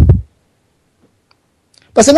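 A man's speech breaks off with a short low thump, then a pause of near silence broken by a couple of faint clicks, before he starts speaking again right at the end.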